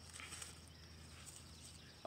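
Near silence: faint outdoor ambience with a steady low hum.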